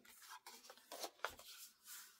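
Faint, brief rustles of paper being handled and pressed flat by hand, a few soft scattered touches.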